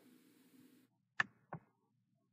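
Two short, sharp computer mouse clicks about a third of a second apart, the first louder, over near silence.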